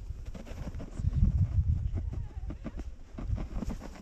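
Plastic sledge sliding over packed snow: an irregular run of scraping and crunching over a low rumble, loudest about a second in, with boots dragging in the snow.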